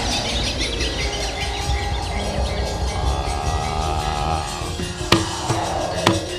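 Javanese gamelan music accompanying a wayang kulit shadow-puppet scene, with a wavering held tone in the middle. A single sharp knock comes near the end.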